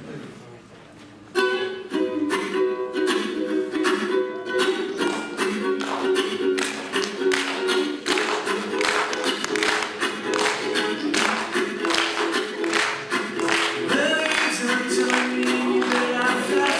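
Ukulele strummed in a steady rhythm, beginning about a second and a half in.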